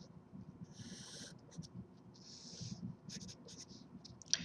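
Sharpie fine-point marker drawing lines on paper: a faint stroke about a second in, a longer one about two and a half seconds in, then several short quick strokes near the end.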